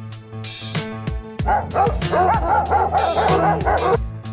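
Background music with a steady beat. About a second and a half in, a dog starts barking in a quick run of yaps over it, stopping abruptly near the end.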